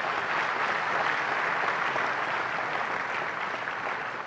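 An audience applauding, easing off slightly near the end.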